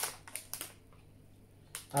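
A few soft clicks and crinkles from a plastic instant-noodle packet handled in the hands, mostly in the first moments, with one more just before the end.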